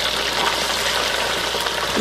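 Battered fish fillets deep-frying in oil at about 375 °F in an electric deep fryer: a steady, loud sizzle of vigorously bubbling oil just after the fish went in, with a low steady hum underneath.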